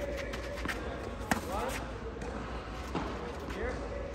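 Tennis balls being struck by rackets and bouncing on the clay court: a series of irregular sharp knocks, the loudest about a second in, with voices talking faintly underneath.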